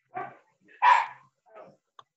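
A dog barking over a video-call microphone: three short barks about half a second apart, the middle one loudest.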